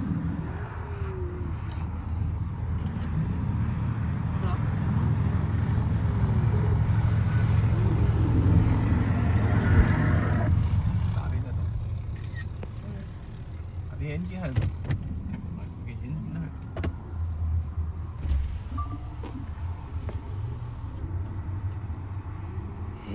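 Low rumble of a car driving slowly, heard from inside the cabin. It builds over the first ten seconds and eases off after about eleven seconds.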